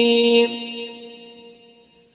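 A Quran reciter's voice holding one long, steady note that breaks off about half a second in; its echo then dies away over the next second and a half to almost nothing.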